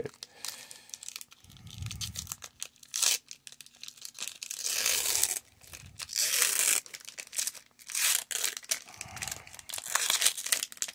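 A foil Pokémon booster pack wrapper being torn open by hand and pulled apart around the cards, crinkling and tearing in irregular bursts.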